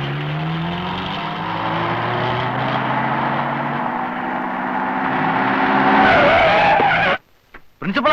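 Jeep engines running hard, their pitch slowly climbing, with tyres skidding on a dirt road. A falling tyre squeal comes about six seconds in, and the sound cuts off abruptly just after seven seconds.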